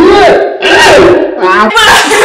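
Two women shouting "Whoa!" over and over, loud and drawn out, with their voices overlapping, reacting to the burn of extra-hot spicy Cheetos.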